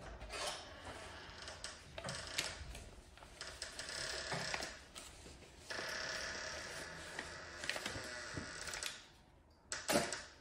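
Thin plastic wrapper crinkling as it is unfolded and handled by hand, in uneven spells with a longer steady stretch of rustling from about six to nine seconds.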